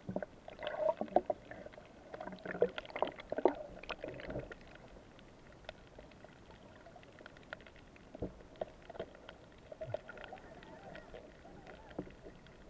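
Muffled sound from a camera held underwater: bubbling and scattered short clicks, busier for the first four seconds or so, then quieter with only occasional clicks.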